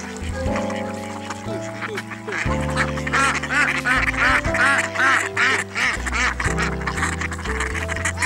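Ducks quacking in a rapid run of calls through the middle, over background music with sustained notes.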